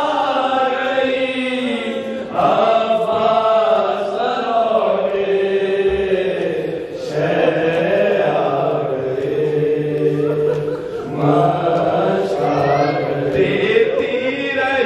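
Men's voices chanting a noha, a Shia mourning lament, together in a sustained melody, with short breaks between phrases.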